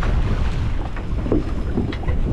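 Wind buffeting the microphone out on open sea, a steady low rumble with the wash of the water around the boat beneath it.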